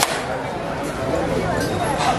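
Voices of people around the court talking and calling out, overlapping, with a sharp click right at the start.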